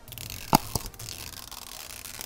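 Clear plastic shrink wrap being peeled and pulled off a plastic capsule ball: a steady rustle, with two sharp crackles about half a second in.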